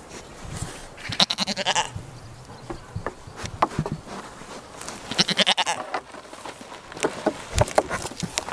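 A goat bleating twice, a wavering call about a second in and another about five seconds in, with short knocks of hooves on a wooden deck between them and a loud thump near the end.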